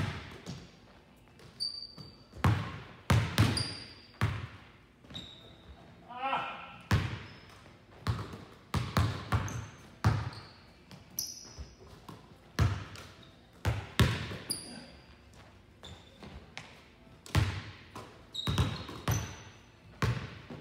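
Basketball bouncing on a hardwood gym floor, a sharp bounce every second or so at an uneven pace, with short high sneaker squeaks, echoing in a large gym.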